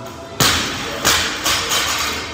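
Loaded barbell with rubber bumper plates dropped onto rubber gym flooring: one heavy impact, then three smaller bounces that come closer together and fade.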